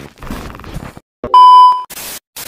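A loud, steady electronic beep of a single pitch, lasting a little over half a second, like a TV test-tone bleep. Before it comes about a second of rough, crackly noise.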